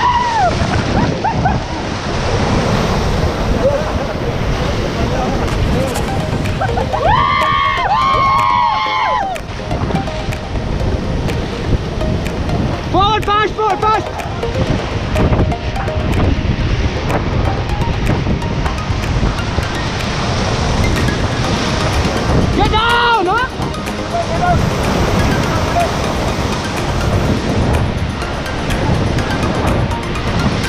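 Loud, steady rush of whitewater crashing against and over an inflatable raft in a big rapid. People on the raft shout or yell out three times over the water noise.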